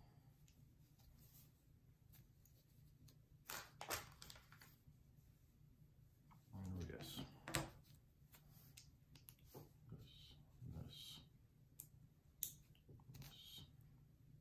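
Faint, scattered clicks and taps of small plastic Lego minifigure parts being handled and pressed together, over near-silent room tone.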